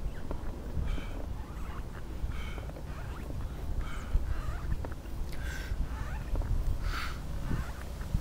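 A person's breathy exhalations repeating about every second and a half, in time with pushing a manual wheelchair, over a steady low rumble of the wheels rolling on asphalt.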